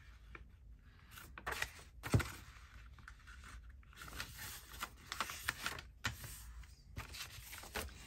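Paper pages rustling and sliding as they are folded and handled, with a short knock about two seconds in.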